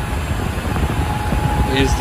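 HPE BladeSystem c7000 blade enclosure's cooling fans running: a loud, steady rush of air with a low rumble and a thin steady whine through it.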